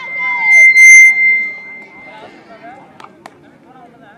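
A single long, steady, high whistle blast lasting about two seconds, over a man's voice and crowd voices. Two sharp slaps come about three seconds in.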